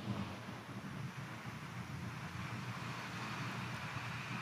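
Steady church room tone during a silent pause: a low, even hiss and hum with no distinct events.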